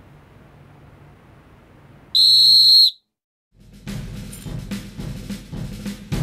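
A single loud, shrill whistle blast lasting a little under a second, about two seconds in, wakes the sleeper. After a moment of silence, music with heavy drum hits starts up.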